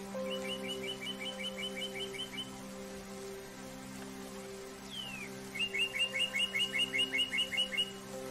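Bird song over soft, sustained spa music. Twice a bird sings a phrase that starts with a downward-sliding note and runs into a rapid trill of about a dozen chirps, the second phrase louder.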